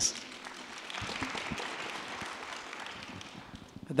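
Audience applause, starting about a second in and dying away just before the end.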